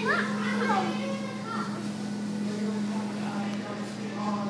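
A young child's wordless vocal sounds, with a high squeal that rises and falls in the first second, over other voices and a steady low hum.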